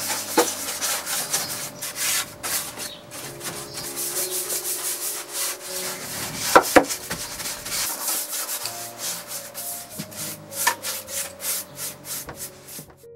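A bristle brush scrubbing a liquid finish into the bare wooden bottom of a drawer in quick, repeated scratchy strokes. Two louder knocks come about halfway through.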